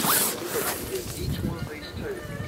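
Nylon tent door zipper pulled with a quick rasp at the start, followed by quieter rustling and faint voices.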